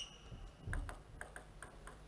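Table tennis ball bounced repeatedly by a player before a serve: a run of light, quick clicks about five or six a second, after a short high ping at the start and a soft thump a little under a second in.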